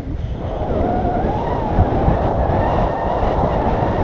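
Steady rumbling wind noise buffeting an action camera's microphone in flight under a tandem paraglider, with a faint wavering tone running through it.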